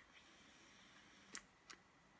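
Near silence: the faint hiss of a long drag on a box-mod e-cigarette, with two soft clicks about one and a half seconds in.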